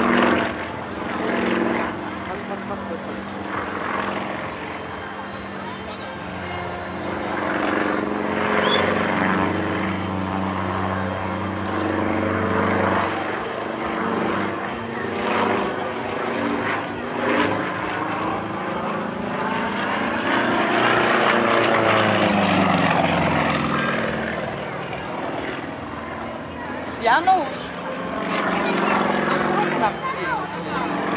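A single-engine propeller aerobatic plane flying a display overhead, its engine droning steadily at first and then swinging up and down in pitch as it manoeuvres.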